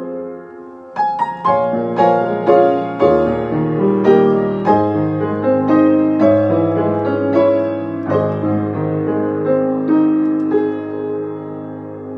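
Solo grand piano playing an improvised piece: after a brief lull, a new phrase of chords and melody begins about a second in, over held bass notes from the middle on, growing softer near the end.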